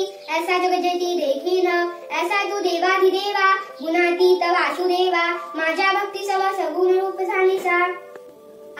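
A young girl chanting a Marathi devotional stotra in a sing-song recitation, phrase after phrase with only brief breaths, stopping shortly before the end.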